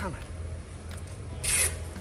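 Short scraping rustle, about one and a half seconds in, from a small plastic plant pot full of peat-based potting soil being handled and tipped to loosen the root ball.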